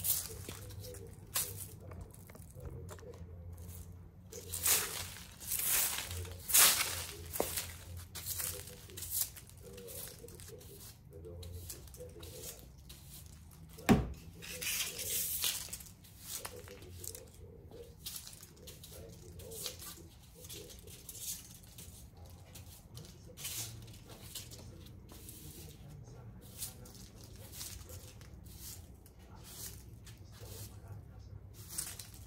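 Irregular rustling and brushing noises, some louder strokes among them, with a single sharp knock about fourteen seconds in, over a steady low hum.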